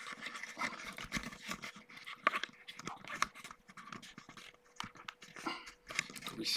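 Handling noise from a camera being gripped and adjusted by hand close to its microphone: irregular rustles and small clicks, over a faint steady hum.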